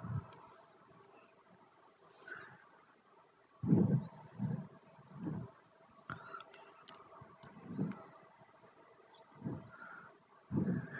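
Quiet room tone broken by about half a dozen faint, short, low-pitched sounds, scattered from a few seconds in to near the end.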